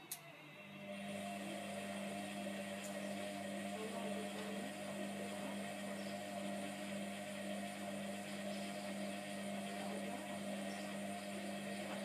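Hotpoint Aquarius WMF720 washing machine in a wash tumble on its fast wash cycle: a click, then the drum motor starts about half a second in and hums steadily at one pitch as it turns the drum.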